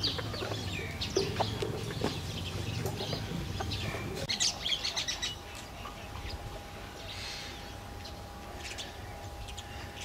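Small birds chirping, short high calls scattered throughout and busiest around four to five seconds in, over a low steady outdoor rumble.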